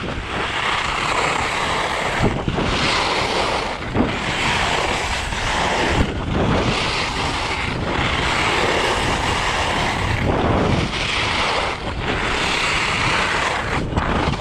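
Alpine skis (Rossignol Radical) carving linked turns on groomed snow: edges hissing and scraping in swells that break about every two seconds as the skier changes edge, with wind buffeting the microphone throughout.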